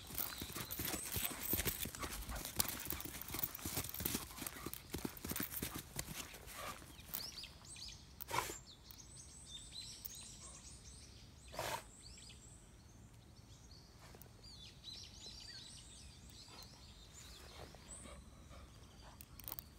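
Close rustling, scuffing and clicking on grass for the first several seconds, with two sharp knocks about eight and twelve seconds in. After that, faint birds chirping.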